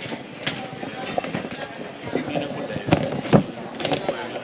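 Indistinct voices of several people talking close by, with two sharp knocks a little after three seconds in.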